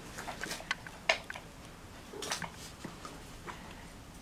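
Cardboard advent calendar box being opened and a small toy taken out and handled: scattered light clicks and soft rustles, a little louder about a second in and again after two seconds.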